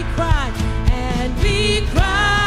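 Live worship band playing a slow worship song, with a vocalist singing a sustained, gliding melody over guitar, bass and a steady drum beat.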